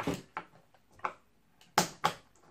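Handling noise of a pack of batteries and other small objects on a desk: about four sharp clicks and knocks with quiet between, the loudest near the end.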